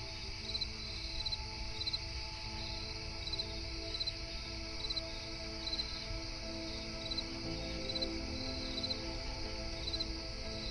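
Crickets chirping, each chirp a short run of rapid pulses, repeating about every three-quarters of a second, over soft ambient music with long held notes.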